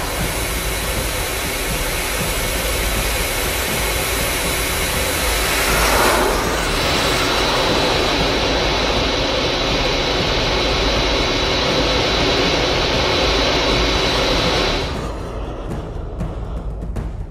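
Sound effect of a cruise missile in flight: a loud, steady jet roar, with a short whoosh about six seconds in, that cuts off shortly before the end.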